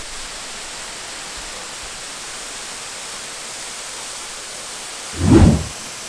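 Steady rushing noise of a man-made waterfall, with one short low thump about five seconds in.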